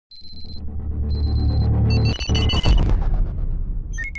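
Electronic logo-intro sound design: two short bursts of fast high beeping over a low rumble that swells louder, then a flurry of bright electronic bleeps about two seconds in, dropping into a deep low boom.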